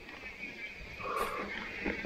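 Mountain bike rolling down a dirt trail: tyre and drivetrain rattle over the ground, with a brief higher-pitched tone about a second in.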